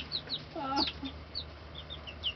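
Baby chicks peeping: a scatter of short, high chirps, each sliding down in pitch.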